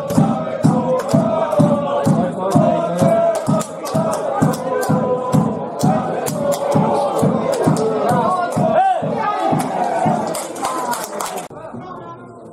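Football supporters chanting together in unison over a steady drum beat, about three beats a second. The chant and drum cut off suddenly near the end.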